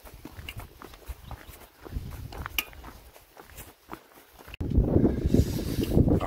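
Footsteps on a stony dirt path, scattered, irregular steps. A little before the end the sound cuts to a louder, steady rumble of wind on the microphone.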